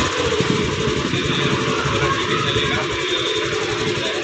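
TVS Scooty Pep scooter engine running steadily with fast, even firing pulses, just after starting. It had stood unused for many days and its kick-start had jammed until the engine was freed with oil.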